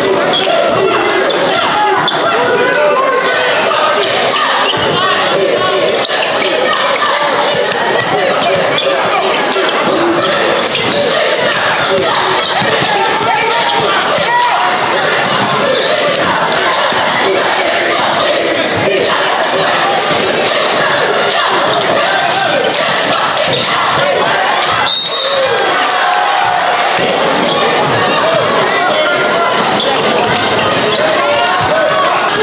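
Basketball bouncing on a gym floor amid indistinct chatter from players and spectators, echoing in a large hall.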